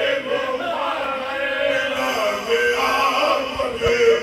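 A group of men reciting a marsiya, a mournful Urdu elegy for the martyrs of Karbala, chanted by voices alone without instruments.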